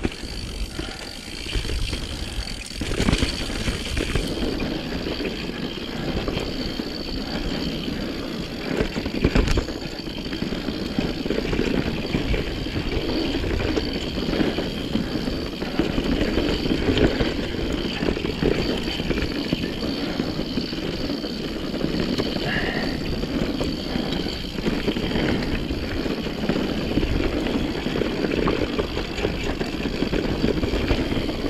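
Mountain bike riding down a dirt singletrack: tyres rolling over dirt and the bike rattling over bumps, with a few harder knocks about 3 and 9 seconds in.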